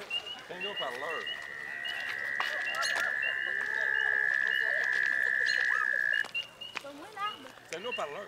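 Frogs calling at a pond: short high peeps repeating about twice a second, over which one long, even trill, the loudest sound, runs for about six seconds before cutting off abruptly.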